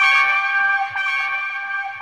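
Electric trumpet playing long held notes, a new note entering at the start and stepping in pitch about a second in, the sound slowly fading.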